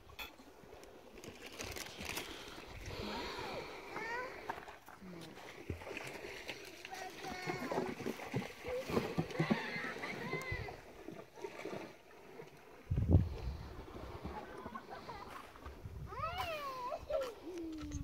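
Distant voices and calls of people, with some water splashing. There is a sudden low bump on the microphone about thirteen seconds in.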